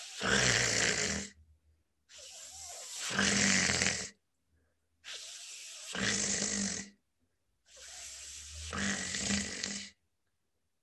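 A man repeatedly saying the consonant cluster "f" plus voiceless uvular fricative, as in French and German "fr". Each time a quieter hiss through lip and teeth runs straight into a louder, lower "kh" from the back of the throat. He says it about four times, each about two seconds long, with short silences between.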